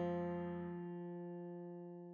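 A single held guitar note, an F, ringing on and slowly dying away.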